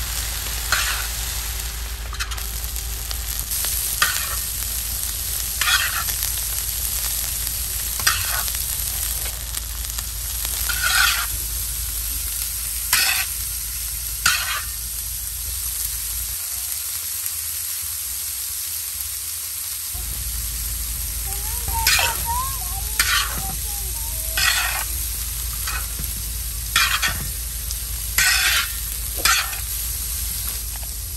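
Noodles stir-frying on a large flat tawa: a steady sizzle, with a metal spatula scraping and knocking on the pan every second or two as the noodles are tossed.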